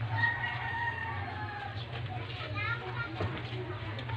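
A rooster crowing once, a long drawn call of about a second and a half, followed shortly by a brief rising call.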